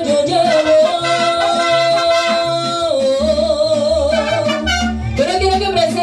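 Live mariachi band playing with a woman singing: long held notes over a plucked bass line, which shifts to a new, fuller rhythm about three seconds in.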